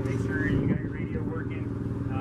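An engine idling steadily, an even low hum, under faint background chatter from nearby people.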